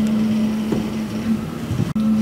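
A steady low hum, fading a little after about a second, with a brief dropout near the end.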